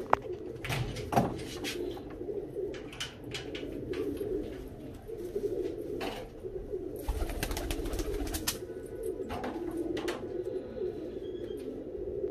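Domestic pigeons cooing continuously in a loft, with scattered clicks and a flutter of wings as a bird lands on the perch about eight seconds in.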